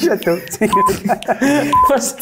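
Game-show countdown timer beeping, a short steady high tone about once a second, twice here, over lively voices.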